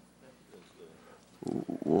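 Faint room hum, then about one and a half seconds in a short, loud burst of a man's voice close to the microphone, running into the word "well".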